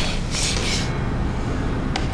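Low, steady rumbling drone of horror-film sound design, with a brief airy hiss about half a second in.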